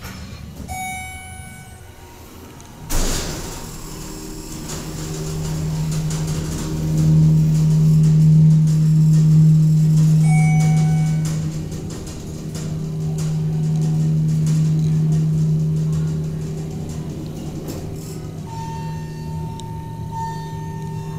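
Schindler hydraulic elevator running with a steady low hum that builds a few seconds in and tapers near the end, the sound of the hydraulic pump unit moving the car. A sudden thump comes about three seconds in. A short chime sounds about a second in and again about halfway through.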